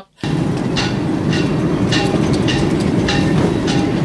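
Wind buffeting the microphone in a steady rumble, with yacht rigging knocking and ringing against masts about six times, roughly every half second or so.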